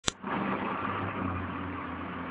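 A sharp click at the very start, then a steady low mechanical hum over background rumble, like an engine running at idle.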